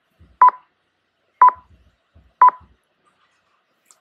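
Three short electronic beeps, evenly spaced about a second apart.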